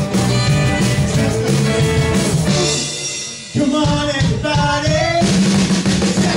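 1950s-style rock and roll music with a drum kit to the fore. About two and a half seconds in, the band drops away briefly into a break. It comes back in sharply with the drums about a second later and is at full sound again near the end.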